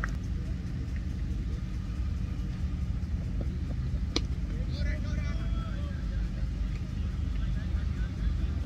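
A single sharp knock of a cricket ball striking bat or gloves as it reaches the batsman, about four seconds in, over a steady low rumble.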